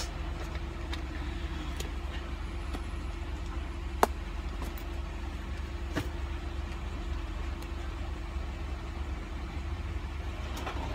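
Car engine idling, a steady low hum heard from inside the cabin, with one sharp click about four seconds in and a fainter one about two seconds later.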